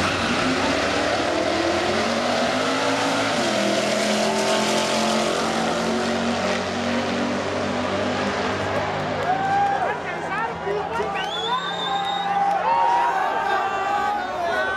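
Turbocharged Mk1 VW Golf (Caribe) drag car launching from the line and accelerating hard, engine rising in pitch with a gear change about three and a half seconds in, then fading away down the track after about eight seconds. Spectators' voices fill the last few seconds.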